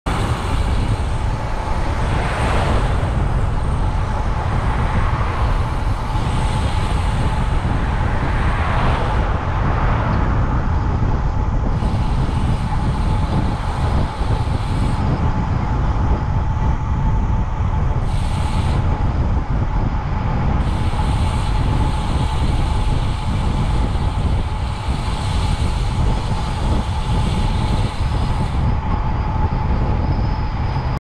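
Wind and road noise on a bicycle-mounted camera while riding, a steady loud rumble with a thin constant whine underneath. It swells briefly twice, about two and eight seconds in.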